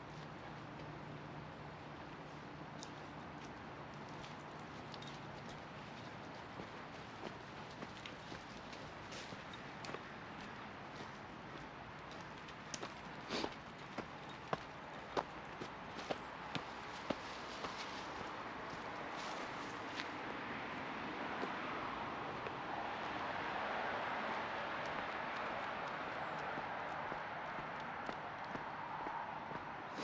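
Footsteps crunching through brush and leaf litter, with a run of sharp snaps and cracks about halfway through, over a steady outdoor wash. In the last third, road traffic noise swells and then eases as vehicles pass.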